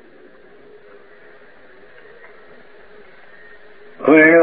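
Steady low hiss of room tone and recording background noise, with a faint steady hum.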